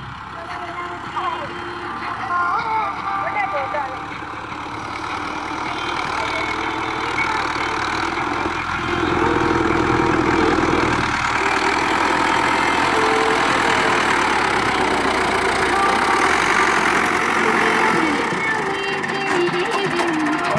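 Farm tractor's diesel engine working under load as it pulls a tine cultivator through dry soil, growing louder over the first several seconds as it comes closer and then holding steady and loud.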